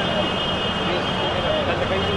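Indistinct talking among the gathered people, over a steady low electrical hum and a faint high steady whine.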